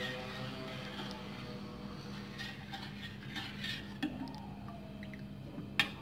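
A metal spoon stirring orange juice and flan mix in a stainless-steel saucepan as it heats toward the boil, with a few light clinks of the spoon against the pan. A steady low hum runs underneath.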